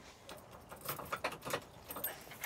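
Light, irregular clicks and a faint jingle as the electric shuttle is switched on by hand; no motor is heard.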